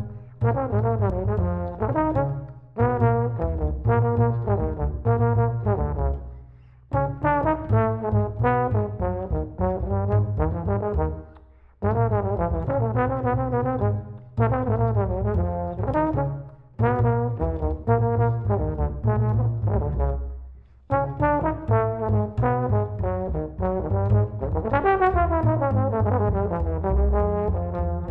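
Jazz duet of trombone and plucked upright bass playing a bebop blues tune: the trombone plays the melody in short phrases with brief breaks between them, over the bass's low plucked notes.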